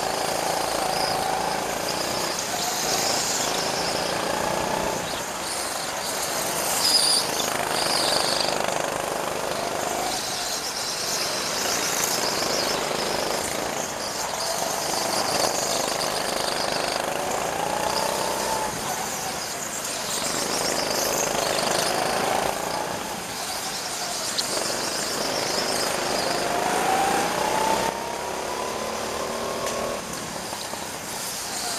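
Go-kart engines running hard, heard from on board a kart with others close ahead, their pitch rising and falling over and over as the karts speed up and slow for corners.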